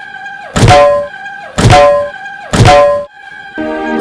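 Three loud, heavy sound-effect hits about a second apart, each a deep thud with a short ringing tone: a dramatic sting laid over the scene.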